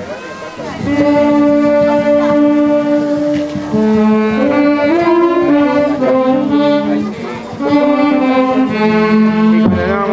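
An orquesta típica's saxophones and other wind instruments playing a slow processional melody in two-part harmony, with long held notes, starting about a second in.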